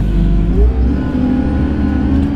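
JCB Fastrac tractor's diesel engine heard from inside the cab, rising in pitch about half a second in and then holding steady at higher revs.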